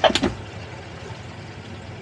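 Boat engine running slowly at idle, a steady low rumble with wind and water noise over it. A brief sharp sound comes at the very start.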